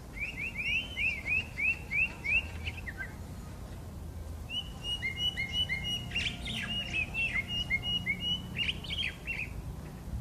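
Eurasian blackbird singing: a quick run of about seven clear, arched whistled notes, then after a pause of about two seconds a longer, more varied phrase of notes at two alternating pitches mixed with fast sweeps.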